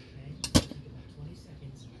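Two quick sharp knocks close together about half a second in, as the old pressed-steel Tonka toy truck is handled and set down, over a faint steady hum.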